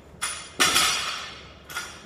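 A loaded barbell clinking during deadlift reps: three sharp metallic hits, each ringing briefly, the second the loudest.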